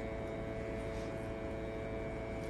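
Steady mechanical hum with a few constant tones over a faint hiss, from running equipment during a boiler sweep test.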